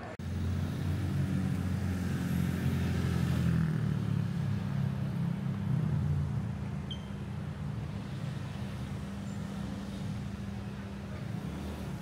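Road traffic on a city street: cars passing with a steady low rumble, louder for the first few seconds and then even.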